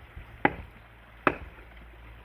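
Two sharp blows on log wood, a little under a second apart, each with a short ring after it.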